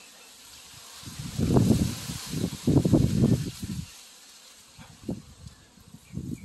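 Wind buffeting the microphone in two strong rumbling gusts, the first about a second in and the second about a second later, over a steady hiss of wind.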